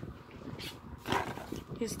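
Plastic DVD cases being handled and picked up off a blanket: a few short light clacks and rustles.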